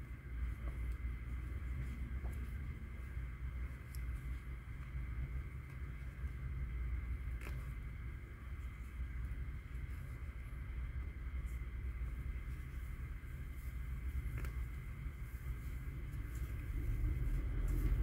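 Quiet background: a steady low rumble with a faint high hum, and a few soft clicks spread far apart.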